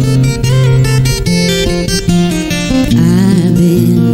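Recorded live music: a fingerpicked acoustic guitar playing a slow, gentle pattern, with a woman's singing voice coming in near the end.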